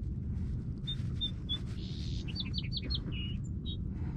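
A small bird singing: three short whistled notes about a second in, then a quick run of falling chirps and two more notes near the end. A steady low rumble lies underneath.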